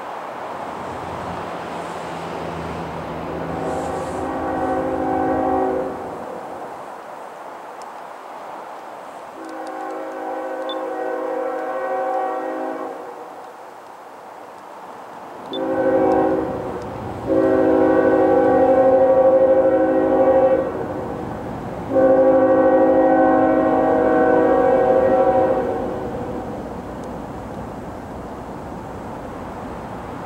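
Union Pacific diesel locomotive's air horn sounding a chord in a series of blasts as the train approaches from a distance: two long blasts, a short one about 16 seconds in, then two more long ones, the last two loudest. A low train rumble runs underneath.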